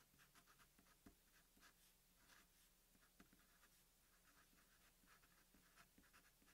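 Near silence, with the faint scratching of a Sharpie marker writing on paper in many short strokes.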